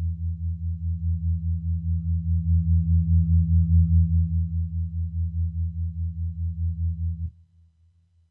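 Clavia Nord C2D clonewheel organ (Hammond B-3 clone) holding a low final chord through its Leslie rotary-speaker simulator, the tone pulsing quickly and evenly. It swells a little in the middle, then cuts off sharply near the end, leaving a brief reverb tail.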